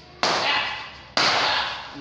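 Two loud slaps of taekwondo kicks striking a handheld kick paddle, about a second apart, each trailing off over about half a second.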